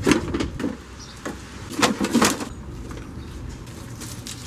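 Several sharp knocks and clatters of metal parts and tools being handled during front-end disassembly of a car, bunched in the first half, then a quieter low background.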